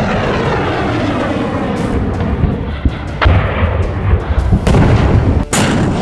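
Missile launch footage: a loud, continuous roar from the rocket motor with a deep rumble and a falling, sweeping rush over the first two seconds. Two sharp cracks cut through it, about three seconds in and near the end.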